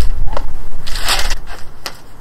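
Newspaper rustling and crinkling as it is picked up and handled, loudest about a second in.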